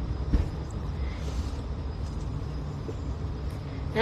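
Low, steady background rumble picked up by a phone microphone during a pause in speech, with one faint knock about a third of a second in.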